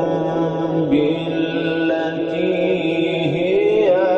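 A male Quran reciter chanting in the melodic mujawwad style, holding long ornamented notes that turn slowly up and down in pitch without a break.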